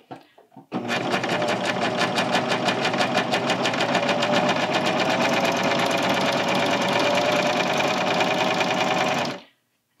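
Bernina serger (overlocker) running at a steady speed as it stitches and trims the short-end seam of a knit T-shirt neckband. It starts about a second in, runs for about eight seconds and stops shortly before the end.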